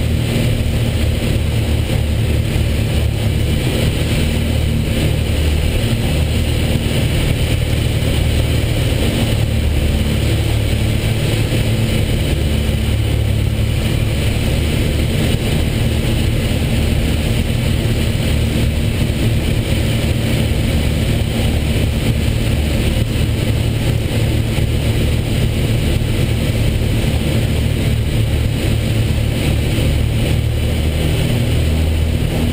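Piper PA-34 Seneca II's propeller engines running steadily, heard inside the cockpit as a constant low drone.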